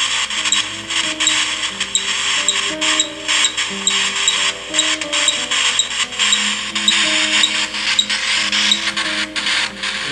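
Steady static hiss with small regular ticks from a spirit-box app on a phone, under slow, low music notes that change every second or so.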